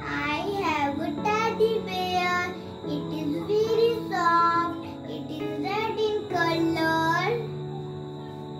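A young girl singing a short song in phrases, stopping a little before the end. Steady sustained instrumental notes run underneath and change pitch every second or two.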